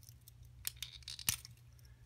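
A few faint, sharp clicks of small objects being handled, the loudest a little past the middle, over a faint steady low hum.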